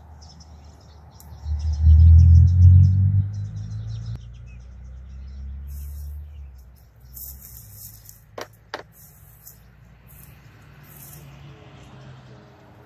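Birds chirping, with a low engine rumble that swells to its loudest about two seconds in and fades away by about six seconds, like a vehicle passing. Two sharp clicks come close together past the eight-second mark.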